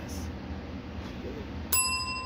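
A single bright bell-like ding struck near the end, ringing on with a clear, sustained high tone.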